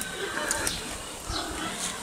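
Pigs grunting in their pens.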